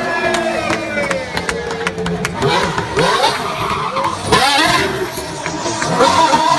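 Mercedes Formula One car's V6 turbo engine, its pitch falling over the first two seconds, then revving up and down, with tyres squealing through the second half as it spins on the tarmac.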